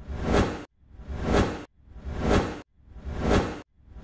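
Repeated whoosh sound effect, four in a row about one a second, each swelling up and then cutting off abruptly.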